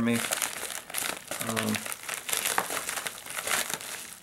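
Plastic bubble mailer crinkling and rustling as it is handled and slit open with a folding knife, with many small sharp crackles throughout.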